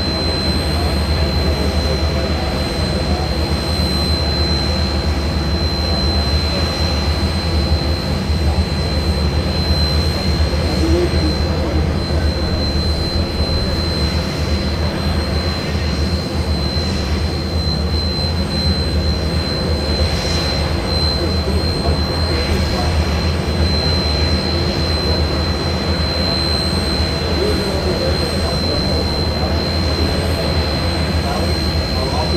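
Steady engine noise with a low rumble and a constant high-pitched whine.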